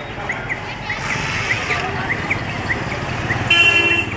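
Busy street traffic noise with a regular high squeak repeating about three to four times a second, and a short vehicle horn honk near the end that is the loudest sound.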